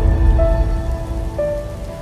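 Logo-intro music: held synth notes that change pitch about once a second over a deep rumble and a steady hiss.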